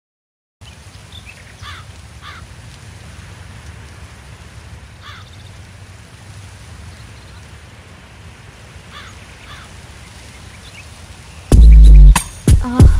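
Outdoor ambience: a steady low rumble with birds giving short, falling calls a few at a time. Near the end a sudden loud low boom cuts in.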